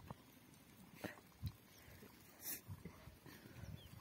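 Near silence beside a large flock of sheep and goats: only a few faint, scattered knocks and rustles, with a brief hiss about two and a half seconds in.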